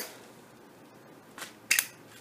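Solid brass Zippo lighter's lid clacking shut with a sharp metallic double click near the end, after a faint tick.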